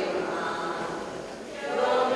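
A choir singing a closing hymn in a church, the voices easing off briefly about three-quarters of the way through before coming back in.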